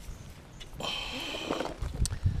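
Handling noise as a baitcasting rod and a plastic tackle box are picked up off the grass: a brief rustle about a second in, with a few faint clicks.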